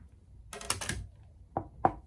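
Rigid acrylic sheets being handled and set against a table: a short clattering scrape about half a second in, then two sharp plastic clicks close together near the end.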